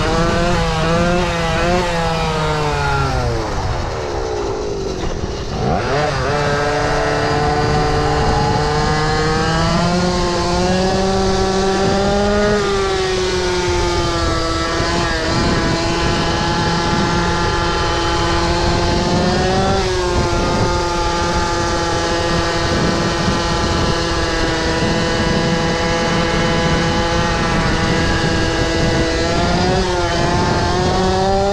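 Small two-stroke engine of a Go-ped stand-up gas scooter running under throttle while ridden. Its pitch wavers at first, drops off about four seconds in, climbs again a couple of seconds later and then holds a fairly steady high note with small rises and dips.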